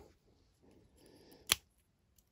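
A faint rustle, then one sharp click about one and a half seconds in, from a small plastic Transformers minibot figure being picked up and handled.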